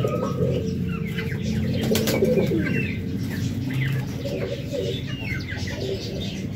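Pigeons cooing over and over, with short higher chirps from other birds.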